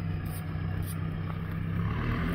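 Mahindra Roxor's four-cylinder turbo-diesel engine running as the lifted UTV drives off, a steady low drone.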